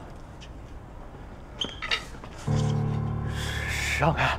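Tense drama score: after a couple of brief soft sounds, a low sustained note comes in about halfway through and holds, with a high swell building near the end.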